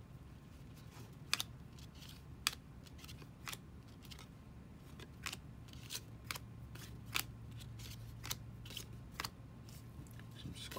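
Baseball trading cards flipped by hand one at a time: irregular sharp flicks and snaps of card stock, about one a second, over a faint steady low hum.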